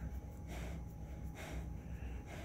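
Quiet breathing, a few soft breaths close to the microphone, over a low steady hum.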